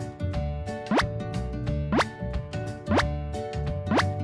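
Background music with a cartoon pop sound effect, a quick upward-sliding bloop, heard four times about a second apart.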